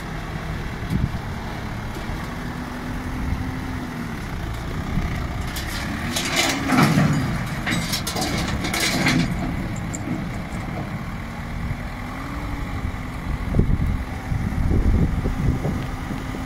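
A three-ton light truck's engine revving in surges as the truck climbs a steep ramp onto a lowbed trailer, its pitch rising and falling several times. A stretch of loud hissing noise comes midway.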